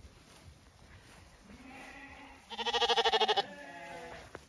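Zwartbles ewe lambs bleating: a fainter call about a second and a half in, then one loud, fast-wavering bleat near three seconds, with a softer call trailing after it.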